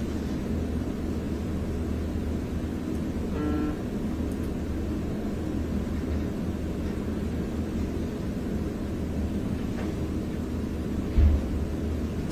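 Steady low hum of room noise with no speech. A short pitched sound comes about three and a half seconds in, and a single low thump near the end.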